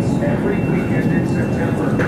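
Supermarket background noise by the refrigerated freezer cases: a steady low hum with a thin, high-pitched whine held throughout, and faint indistinct voices.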